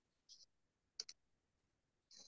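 Near silence with two faint, short clicks: a weak one about a third of a second in and a slightly stronger one about a second in.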